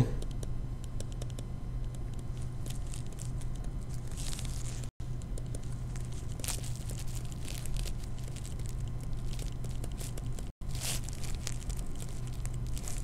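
A stylus scratching and tapping on a tablet screen during handwriting, over a steady low electrical hum. The sound cuts out for an instant twice.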